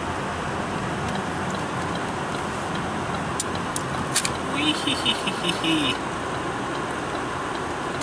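Steady road and engine noise heard from inside a moving car's cabin. About halfway through, a brief, higher-pitched, voice-like sound rises above the road noise for a second or so.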